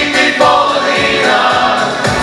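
Mixed choir of men's and women's voices singing a Ukrainian song together through stage microphones, over an accompaniment with a steady low beat.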